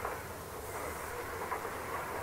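Steady background noise of an amateur recording of a spoken talk: an even hiss with a low hum beneath it, and no distinct event.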